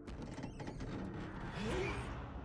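Sound effects from the anime episode playing: a noisy stretch that starts suddenly, with a few clicks about half a second in and a short gliding tone near the end.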